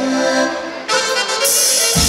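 Live band music led by accordion. About a second in it drops briefly, then cymbals come in and a heavy bass and drum beat starts near the end.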